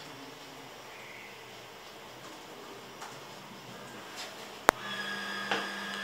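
Quiet room with faint marker strokes on a whiteboard. About three-quarters of the way in there is a sharp click, and a steady motor hum starts up straight after it and keeps going.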